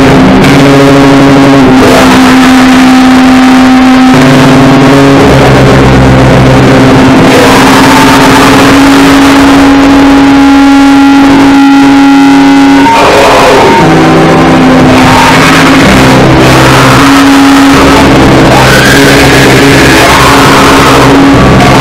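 Harsh noise music played very loud and saturated: a dense wall of distorted noise with sustained droning tones that jump to new pitches every second or two.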